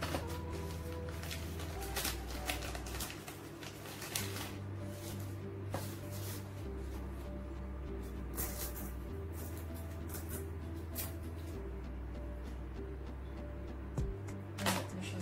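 Background music with a slow bass line that changes note every second or two. Over it come scattered short rustles and clicks of a plastic package and a clip-on microphone's cable being handled.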